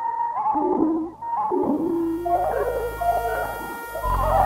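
Electronic music composition: wavering, sliding pitched tones that warble up and down. About halfway through, a low steady drone and faint high held tones join them.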